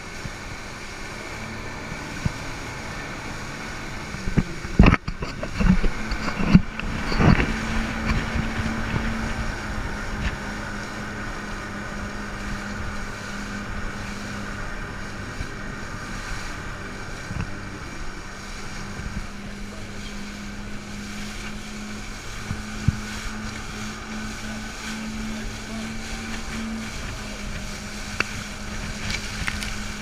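Twin Evinrude outboard motors running at speed: a steady drone under a rush of wind and water across the microphone. A cluster of loud thumps comes about five to seven seconds in.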